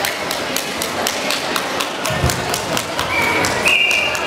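Scattered hand claps ringing in a large hall, irregular and several a second, with one low thump about two seconds in and a short, high, steady tone near the end.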